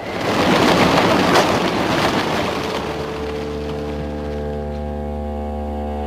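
Opening music of a radio play: a rushing noise swells up and fades over the first three seconds, giving way to low sustained held notes.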